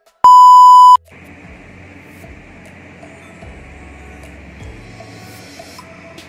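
A loud, steady electronic beep lasting under a second, shortly after the start, followed by quieter background music.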